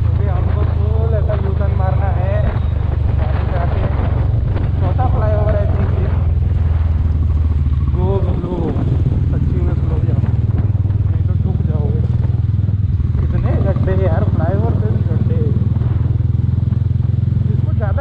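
Mahindra Mojo 300's single-cylinder engine running at cruising speed with a steady low drone, heard from the rider's seat, easing off briefly about halfway through.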